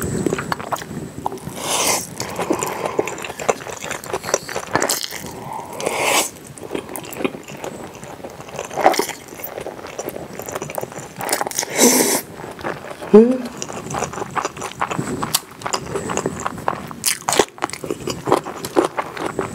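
Close-miked eating sounds: spicy kimchi fettuccine being slurped up in several loud sucks and chewed wetly, with many small smacks and clicks of the mouth. A brief hummed 'mm' comes about two-thirds of the way through.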